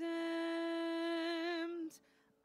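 A single singing voice holds one steady note for nearly two seconds, wavering slightly near the end before it stops.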